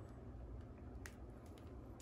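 Near silence with room hum and a few faint light clicks from a vinyl record jacket being held and tilted in the hands.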